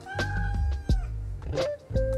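A domestic cat meows: one long, level call that drops at its end, then a shorter wavering call about a second and a half in, over background music with a steady beat.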